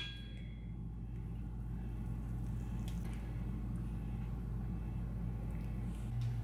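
Quiet kitchen room tone: a steady low hum with no distinct events, while thick custard is poured and scraped from a steel pot into a pie crust without making any clear sound.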